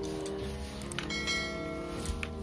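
Background music, with a mouse-click sound effect about a second in followed by a bright bell chime ringing out for nearly a second: the sound of a subscribe-button animation.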